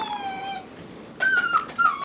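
Eight-week-old Airedale Terrier puppies whining. There is a falling whine in the first half second, then a quick run of high-pitched whines starting a little over a second in.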